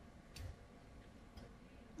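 Near silence with two faint ticks a second apart: a stylus tapping on a tablet screen while writing.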